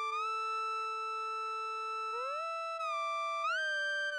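Background music: a G-funk style synth lead holding one long note, then sliding up to a higher note about two seconds in and easing slightly down near the end.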